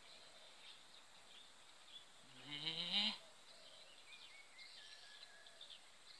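A short vocal sound rising in pitch, about two and a half seconds in and lasting under a second, over faint scattered high chirps.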